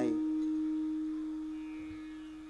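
A single struck note from the kirtan's accompaniment keeps ringing as one steady tone with a few overtones, slowly fading away.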